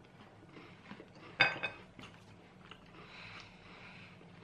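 Faint chewing and mouth sounds from people eating a Twix chocolate-coated biscuit bar, with small clicks throughout and one brief louder sound about one and a half seconds in.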